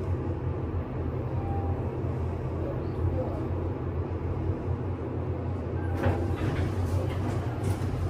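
Traction elevator car descending with a steady low ride hum. It arrives and its doors slide open about six seconds in.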